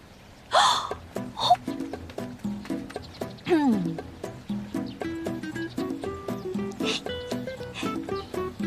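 Light, playful background music of short plucked-sounding notes starting about half a second in. A woman's brief wordless exclamations come over it, one near the start and one sliding down in pitch midway.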